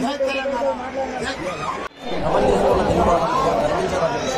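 Voices talking over one another in a crowd, with a short break about two seconds in, after which the chatter is louder and denser.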